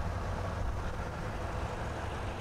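Steady low background rumble with a faint even hiss and no distinct events.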